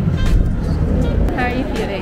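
Speech over background music, with a steady low rumble underneath.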